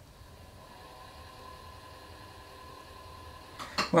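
Electric pottery wheel's motor running with a faint steady hum made of several thin tones. A short sharp click comes near the end.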